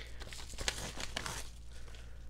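Crinkling and tearing of a mailing package being opened by hand: a run of small crackles and tears, thinning out after about a second.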